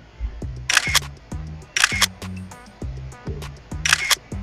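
Soft background music with a low, evenly repeating bass line, overlaid with three sharp click sound effects from an animated subscribe-button reminder: about a second in, near two seconds, and at the end.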